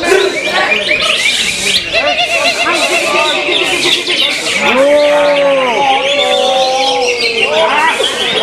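Cucak hijau (green leafbirds) in contest cages singing a dense run of quick, warbling, chattering phrases. About five seconds in, a long, low, drawn-out human shout sounds over them, sliding down in pitch toward the end.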